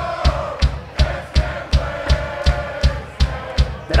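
Live rock band playing a fast song: the drum kit keeps a steady beat of about three hits a second under a long sung "oh".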